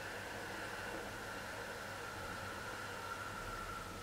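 A long, slow breath, heard as a steady soft hiss lasting the whole few seconds. It is the breathing of a seated costal-breathing exercise done with the core held engaged.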